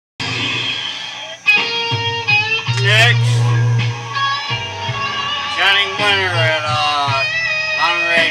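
Electric guitar playing blues lead lines, with notes bent and slid up and down in pitch, over a steady low bass tone.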